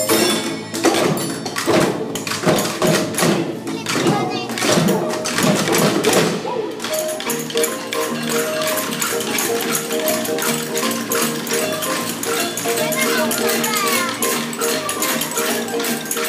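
A young children's percussion ensemble playing a song, with many small hand percussion instruments shaken and tapped in a busy rhythm. About seven seconds in, steady held musical notes come in under the percussion, with voices over them.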